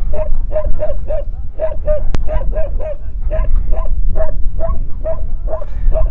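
A dog barking in a steady run of short, same-pitched barks, about three a second, over a low wind rumble on the microphone, with one sharp click about two seconds in.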